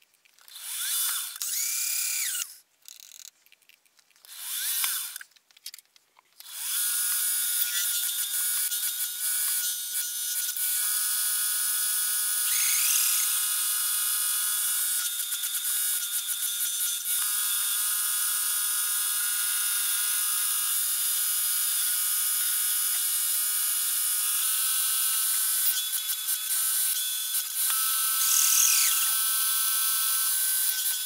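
Milling machine spindle running a twist drill through a metal plate, cutting holes. It starts with several short bursts of cutting in the first six seconds, then settles into a steady whir for the rest.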